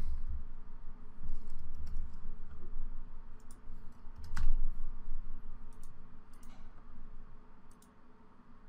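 Computer keyboard typing and mouse clicks: scattered separate clicks with low desk thuds, the sharpest click about four and a half seconds in.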